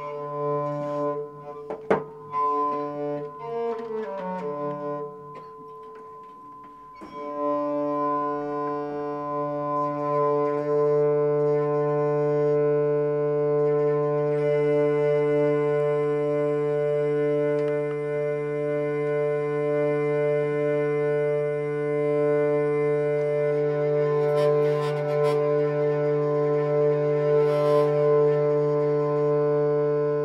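Acoustic folk string instruments, a bowed nyckelharpa among them, hold a steady drone chord without a break. A couple of seconds in, a note slides down in pitch and the sound thins out. About seven seconds in the full drone returns, and higher melody notes join over it midway.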